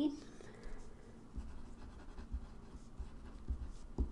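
Pen writing on paper, faint irregular scratching strokes as an equation is written, with a few soft low knocks of the pen and hand on the desk.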